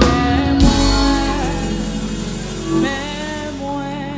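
Live gospel worship music: a band with a drum kit plays under a woman singing long, wavering notes, with a drum hit about half a second in.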